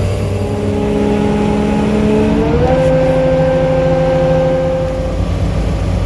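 Kato mobile crane's diesel engine running steadily, then rising in pitch about two and a half seconds in and holding at higher revs as the hoist winch takes in the wire rope under load, heard from inside the cab.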